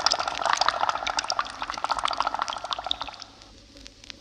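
Bubbling underwater sound effect, a dense run of small pops that fades out over about three seconds.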